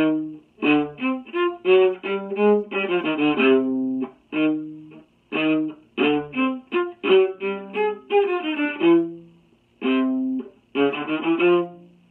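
Solo viola, bowed, playing a tango part in short, separated notes with brief gaps between phrases and a few quicker runs of notes.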